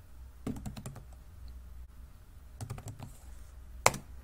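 Typing on a computer keyboard: a few scattered keystrokes, then one sharp, louder click near the end, over a faint steady low hum.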